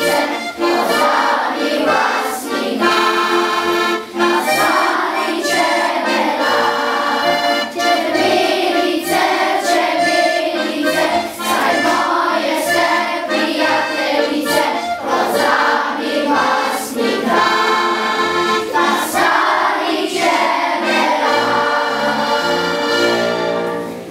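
A children's choir singing a folk song to a button accordion accompaniment, with a steady beat; the music stops near the end.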